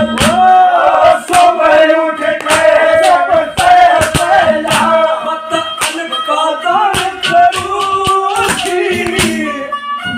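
A man singing a devotional kirtan song in a sustained, wavering voice, accompanied by harmonium and frequent sharp percussion strikes.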